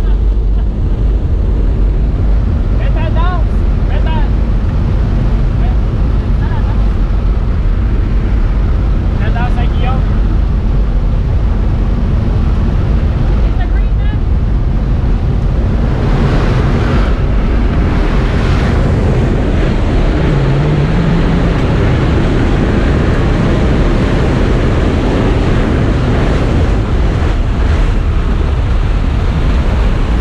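Steady drone of a jump plane's engine and propeller heard from inside the cabin, with wind noise that grows louder and rougher from about sixteen seconds in, once the jump door is open.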